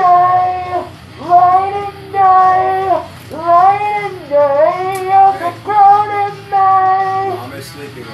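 A high voice singing a melody of held notes, each about a second long with short breaks and small slides in pitch between them.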